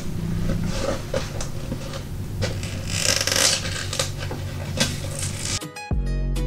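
Thin plastic holographic window film crinkling and crackling as hands peel and crumple it off a cured resin bowl. The loudest, brightest crackle comes about three seconds in.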